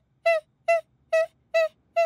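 A high-pitched cartoon voice repeats one short syllable on the same note, evenly about twice a second: five quick chanted notes.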